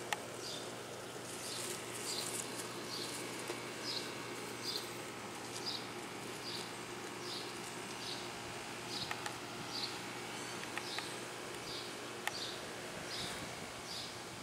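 Short high chirps from a small animal, repeated steadily about twice a second, over a faint steady background hum.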